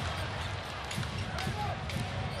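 Basketball dribbled on a hardwood court, a few bounces about half a second apart, over a low steady arena background, with faint commentator speech in the second half.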